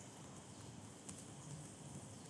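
Faint computer keyboard typing, a few light key taps over low room noise.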